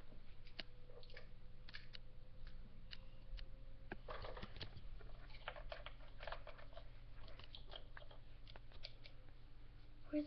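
Small plastic clicks, taps and rustling as Barbie dolls and toy accessories are handled and moved about, with a longer rustle about four seconds in. A steady low hum runs beneath.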